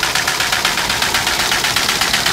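MBO buckle-folder line running at just under 500 feet a minute, folding letter-fold forms. It makes a rapid, even mechanical clatter.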